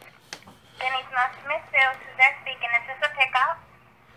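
Speech heard over a telephone line: after a click, the restaurant end answers the call in a thin, narrow-band voice for about three seconds.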